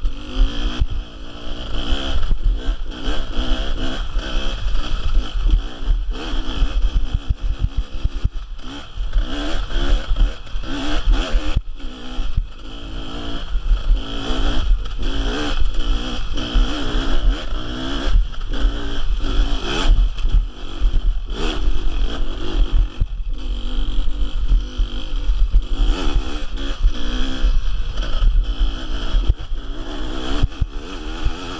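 Beta two-stroke enduro motorcycle engine revving up and down over and over as it climbs a rough dirt track, with brief throttle cuts.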